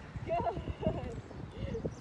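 Randall Lineback cow chewing and crunching a block of compressed grass, a run of irregular low crunches, with faint voices in the background.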